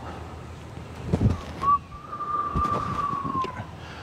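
A single long whistled note, held steady for about two seconds and dipping slightly at the end, after a soft thump about a second in.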